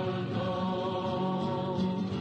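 Music: a slow sung chant, with long held vocal notes stepping from pitch to pitch.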